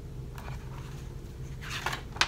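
Quiet room with a steady low hum; near the end, the paper rustle of a picture-book page starting to turn.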